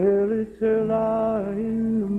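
A man singing a slow work song unaccompanied, sliding up into long held notes with a short break about half a second in.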